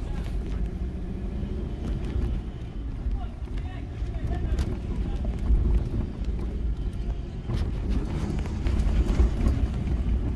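Car interior noise while driving slowly on a rough dirt road: a steady low rumble of engine and tyres, with a few knocks from the car jolting over ruts.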